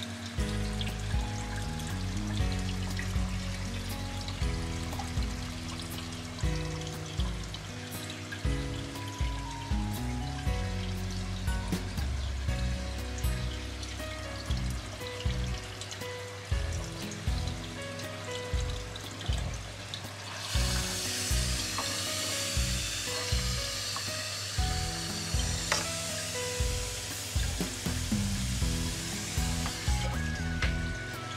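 Background music with a steady beat. From about twenty seconds in it is joined by a steady rush of splashing water, the outflow from a homemade air-lift filter's PVC pipe pouring into its acrylic filter box.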